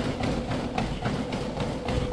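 SportsArt T652 treadmill running at speed, its motor giving a steady whine under a quick, even rhythm of running footfalls thudding on the belt.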